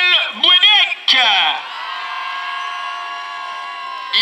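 A man's voice over a public-address loudspeaker announcing a rider, with a couple of short phrases and then the last syllable drawn out into one long held call for about two seconds.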